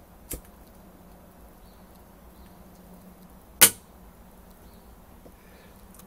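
A pocket lighter being struck to light a cigarette: a faint click near the start, then one sharp, loud strike about three and a half seconds in, over a faint steady hum.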